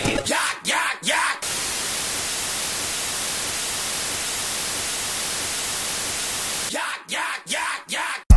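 Breakdown in an electronic dubstep remix: a few swooping sweep effects, then about five seconds of steady static hiss, then more swoops near the end.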